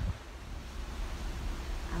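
Wind buffeting the microphone over the steady rush of the open sea below a ship's balcony: an even, noisy rush with a deep rumble.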